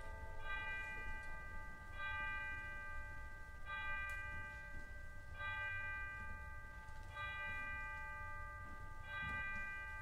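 A bell chiming the hour: single strikes of the same note about every one and three-quarter seconds, six in all, each left ringing into the next.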